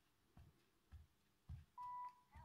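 Sony WH-1000XM3 headphones being handled: a few soft low thumps from fingers on the earcup, then a steady electronic beep from the earcup starting near the end.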